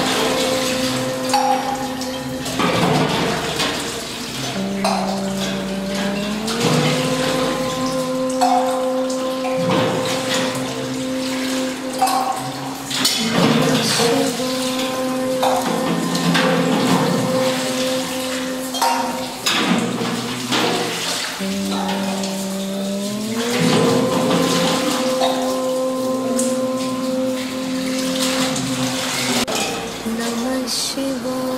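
Water poured from a metal vessel over a stone Shiva lingam, splashing and trickling in repeated pours, under music with long held notes that slide up in pitch twice.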